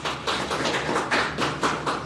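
A small group of people clapping, the separate claps heard distinctly at about five or six a second.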